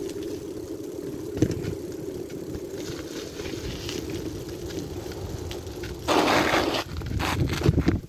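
Bicycle rolling along a concrete road, a steady rolling hum from the tyres and bike. About six seconds in comes a loud rush of noise lasting under a second, followed by a few sharp knocks and rattles near the end.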